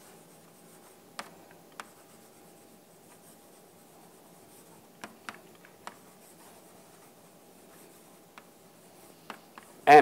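Chalk writing on a chalkboard: quiet scraping with a few sharp taps as the chalk strikes the board. A man's voice starts loudly right at the end.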